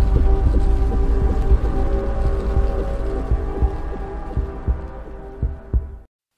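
Logo intro music: a deep pulsing bass under sustained drone tones, fading out gradually.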